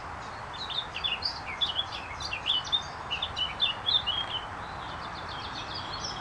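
A bird singing a quick run of short, varied chirping notes for about four seconds, over a steady background hiss.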